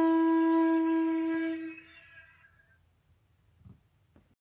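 Transverse flute holding one steady low closing note that fades out under two seconds in, ending the tune; a faint tap follows near the end.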